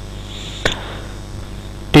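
A pause in the speech: the steady hum and hiss of the recording, broken by one sharp click about two-thirds of a second in.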